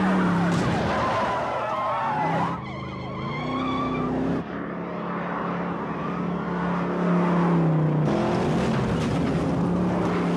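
Car chase: engines revving hard, their pitch climbing and dropping, with repeated tire squeals and skids as the cars slide.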